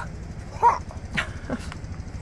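A few brief wordless vocal sounds from a person, over a steady low hum.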